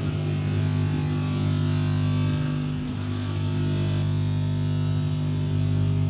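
A loud, steady low drone from the loudspeaker system, a held deep tone with a few higher overtones above it.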